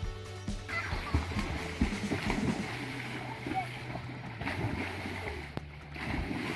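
Water splashing as children jump and swim in a pond, the splashing filling in from about a second in. It plays over background music with steady low held notes.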